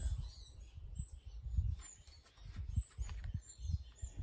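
Small birds chirping in short, high, scattered calls, over low bumps and rumble from the camera being handled while a photo is swapped.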